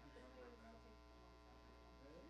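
Near silence: a steady electrical mains hum, with faint, indistinct voices underneath.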